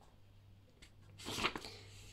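Paperback book's paper pages rustling briefly as they are handled or turned, about one and a half seconds in, over a faint steady hum.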